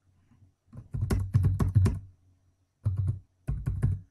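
Typing on a computer keyboard: a quick run of keystrokes for about a second, then two short bursts of keys after a brief pause.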